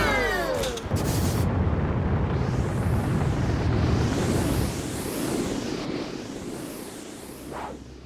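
Cartoon launch sound effect. A falling whistle in the first second gives way to a long, loud rushing whoosh with repeated swooshes, which fades away over the last few seconds.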